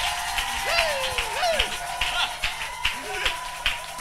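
A congregation clapping irregularly and calling out over a steady held electronic keyboard note.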